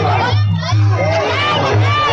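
Muay Thai ring music (sarama): a reed pipe plays a bending, sliding melody over a steady drum beat of about two strokes a second, with a crowd shouting.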